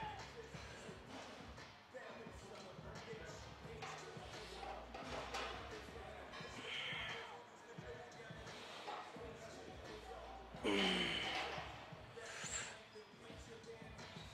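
Strained breaths and grunts of a man doing barbell back squats, the loudest a falling groan about eleven seconds in, over faint gym background music.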